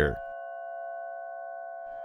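Background music: a soft, steady held chord of several pure tones, like a synth pad, sustained without change.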